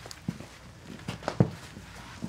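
A horse's hooves knocking and shuffling on a rubber mat as it is turned around: a few separate steps, the loudest about one and a half seconds in.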